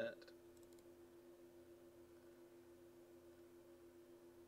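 Near silence: room tone with a steady low hum, and a couple of faint computer mouse clicks in the first half-second.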